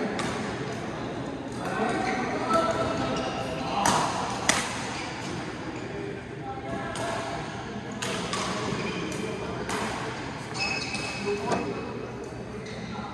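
Badminton rackets striking a shuttlecock in a doubles rally: a series of sharp hits about half a second to a second apart, the loudest pair around four seconds in.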